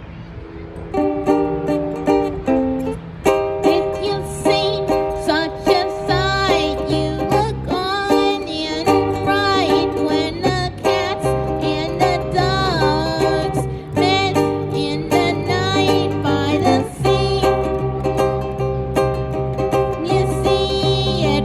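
A country-pop song played live on a strummed small acoustic string instrument with electric bass, coming in fuller about a second in, with a wavering melody line over the chords.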